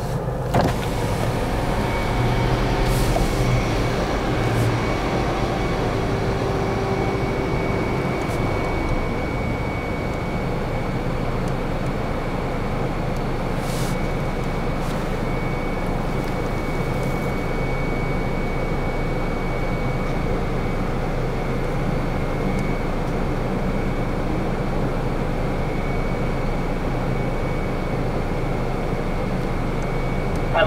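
A car idling, heard from inside its cabin: a steady low engine hum and rumble, a little louder a few seconds in, with an occasional faint click.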